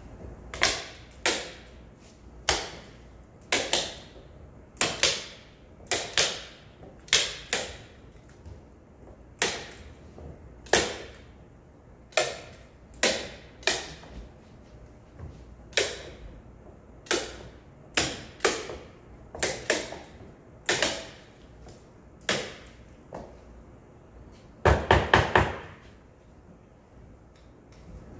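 Hand-held staple gun firing into paper and wooden lattice, a sharp clack roughly once a second, with a quick run of about five shots near the end.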